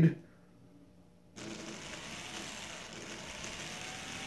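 Small electric motor spinning a propeller on a model train flatcar, powered up about a second and a half in: a steady whirring hiss with a faint whine that creeps up in pitch as the car settles at its idle speed.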